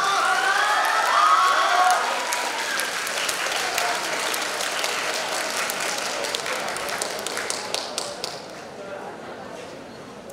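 Audience applauding in a hall, with cheering voices over the clapping in the first couple of seconds; the clapping thins out and fades near the end.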